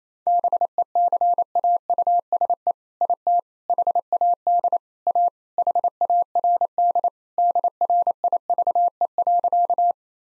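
Morse code at 28 words per minute, a single steady tone keyed on and off in quick dots and dashes, sending the joke's punchline "because it had a hard drive" a second time.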